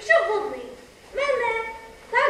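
A young actor's voice gives two drawn-out calls, each falling in pitch, imitating a dog's yelping on stage.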